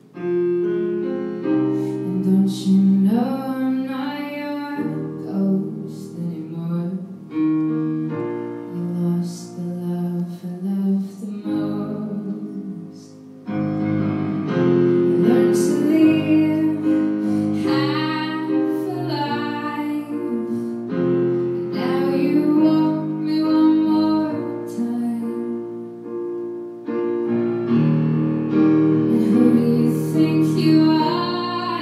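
A woman singing a slow ballad live, accompanying herself on a grand piano with sustained chords.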